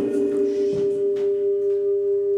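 A sustained chime-like tone: a few steady pitches held together as one sound, with a slight regular wavering in loudness. It is a segment-transition sound at a show break.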